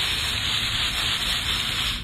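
Garden hose spray nozzle spraying water onto mulch at the base of a sago palm, a steady hiss that shuts off at the end.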